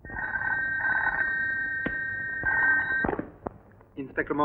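Desk telephone ringing steadily for about three seconds, then stopping as the handset is picked up, with a few sharp clicks from the receiver being lifted.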